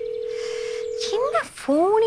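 A steady single-pitch telephone tone, held for about a second and a half, heard on a phone call. A woman's voice comes in over its end.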